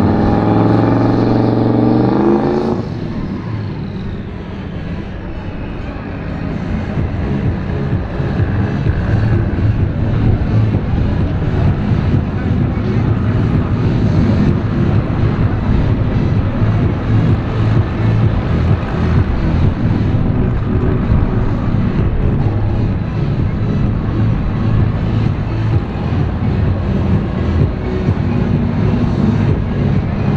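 A turbocharged drag car's engine revving loudly for about three seconds, then dropping to a steady, uneven idle.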